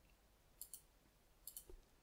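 Faint computer mouse clicks in near silence: a couple of quick clicks about half a second in, then a short cluster of clicks about a second later.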